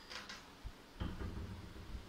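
Handling noise from a hand-held phone camera being carried: a short rustle near the start, then a dull thump about a second in, followed by low rumbling.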